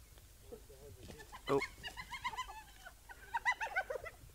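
Spotted hyenas squeaking: runs of short, high, arched squeals, one group about two seconds in and a quicker run of about six near the end.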